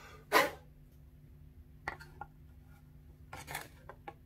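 Handling noise from a metal violin-maker's thickness caliper being picked up and set against a violin's top plate to gauge the plate's thickness. It gives a short rustle about half a second in, a few light clicks around two seconds, and another brief rustle near the end, over a faint steady hum.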